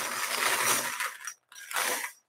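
Wire bingo cage turned by its hand crank, the numbered balls rattling and tumbling inside. The rattle stops about 1.3 seconds in, and a short clatter follows near the end.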